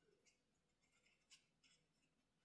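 Near silence, with a few faint, brief scratches of paper being handled while glue is applied from a fine-tip bottle.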